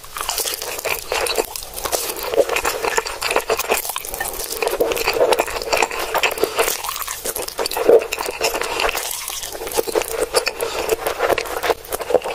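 Close-miked slurping and chewing of black bean ramen noodles (jjajangmyeon), with a dense run of wet smacking clicks and one louder slurp about eight seconds in.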